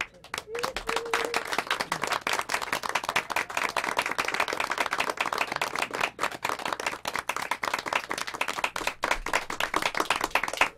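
Small group of people applauding by hand, dense steady clapping at close range that starts right as a song ends and keeps going.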